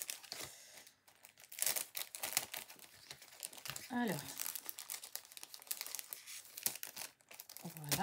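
Clear plastic packaging crinkling in irregular bursts as it is handled. A single spoken word is heard about four seconds in.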